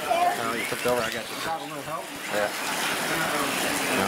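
Indistinct voices of people talking for the first couple of seconds, over a steady background hiss.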